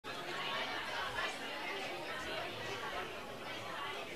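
Indistinct chatter of several people in a large hall: a steady low murmur of voices with no single speaker standing out.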